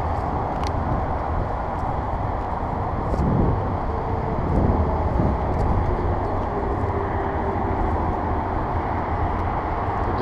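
Steady rumble of road traffic from nearby roads and lots, with a couple of slightly louder swells about three and five seconds in as vehicles pass.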